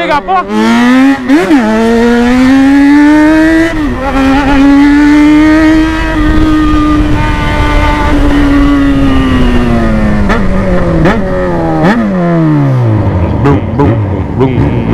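Yamaha XJ6's inline-four engine accelerating through the gears, its pitch climbing with two brief dips as it shifts up, then holding steady. From about ten seconds in it falls away as the bike slows, with three short throttle blips on the downshifts.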